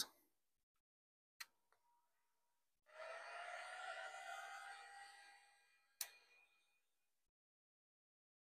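Heat gun fan running faintly for about two seconds, its whine rising slightly in pitch as it spins up, then fading away, with a single faint click before it and another after it.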